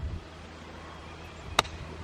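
A golf club strikes a golf ball once: a single sharp click about one and a half seconds in, off a tee mat.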